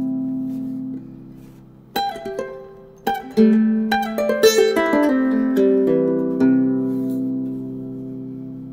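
aNueNue harp ukulele played fingerstyle: a chord rings and fades out, then after a short pause a quick run of plucked notes leads into a last chord that is left to ring and slowly fade.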